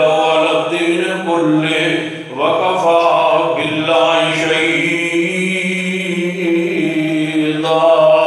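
A man's voice in drawn-out melodic recitation of Quranic Arabic verses, holding long notes with a short break a little past two seconds in.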